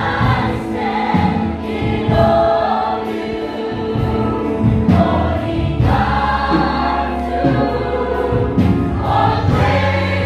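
A large mixed choir of adults and children singing a worship song together, with held low notes of accompaniment underneath.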